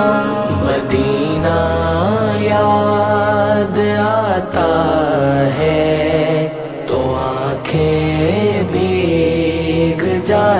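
Wordless vocal chanting for a naat: gliding melodic voice lines over a steady held vocal drone, with a brief dip in the middle.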